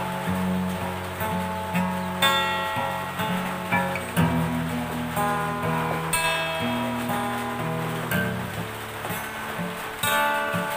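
Solo acoustic guitar, picked with the fingers: chords and single notes ring over a bass line, struck about twice a second at first, then held longer.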